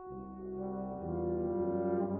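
Brass quintet of two trumpets, horn, trombone and tuba playing sustained chords. A new chord enters just after the start, and the ensemble swells louder about a second in, with the low tuba notes returning.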